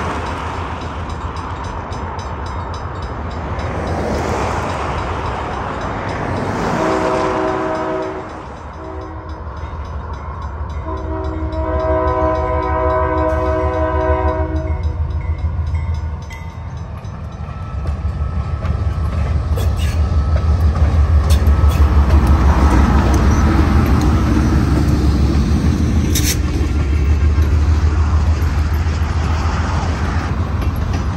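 Diesel freight locomotive sounding its horn for a grade crossing, a short blast and then a long one, as the train approaches. The locomotive then passes with a heavy engine rumble, and freight cars roll by on the rails, with a sharp clank near the end.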